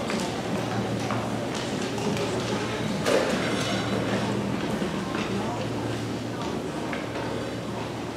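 Indistinct murmur of voices in a hall, with scattered footsteps and knocks on a wooden stage floor as players move about between pieces. A sharper knock comes about three seconds in, over a steady low hum.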